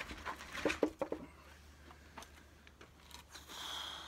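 A few light clicks and rustles of a person moving about, then near the end a breath blown out through pursed lips.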